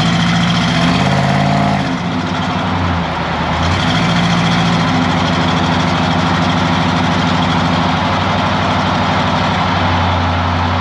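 A pickup's 305 V8 engine and exhaust heard from beneath the moving truck, over tyre and road noise. The engine note climbs for the first second or two, drops about two seconds in, picks up again near four seconds and then holds steady.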